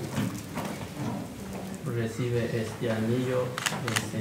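Speech: a man's voice talking throughout, with a brief click near the end.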